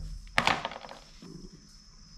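Hard plastic upper timing belt cover knocking once as it is set down on the engine, about half a second in, followed by a few lighter clicks.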